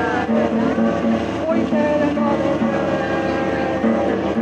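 A woman singing while strumming an acoustic guitar in a steady rhythm.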